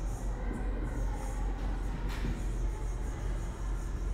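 Steady low hum with faint room noise, and a single faint tap about two seconds in.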